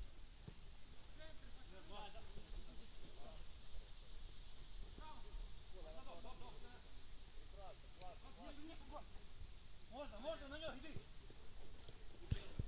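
Faint, distant voices of players calling out on the pitch, with the loudest burst of calls near the end.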